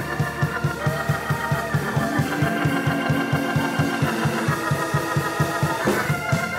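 Live church worship music: sustained keyboard chords over a fast, steady low beat of about four to five pulses a second.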